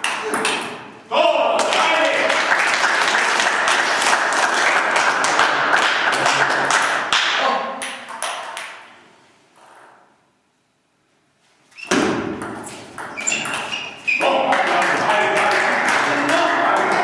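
Table tennis ball clicking sharply off bats and the table in rapid, irregular strikes, over a dense background of voices. The sound fades out to silence for about two seconds midway, then the clicks and voices return.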